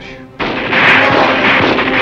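Heavy combat gunfire: many rifle shots overlapping in a dense, continuous rattle that starts about half a second in.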